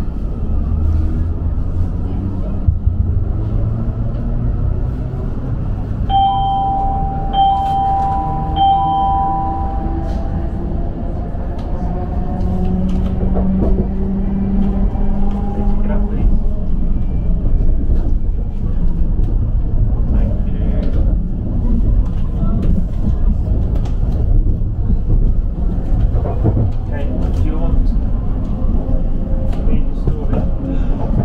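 Class 707 electric multiple unit heard from inside the carriage as it pulls away: the traction motors' whine climbs steadily in pitch as the train accelerates, then levels off over a continuous rumble of wheels on rail. Three short beeps sound about a quarter of the way through.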